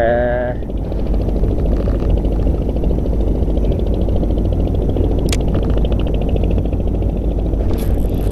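Wind buffeting the microphone over choppy sea water, a steady heavy rumble, with the faint fast even ticking of a spinning reel being wound under it and a single sharp click a little past halfway.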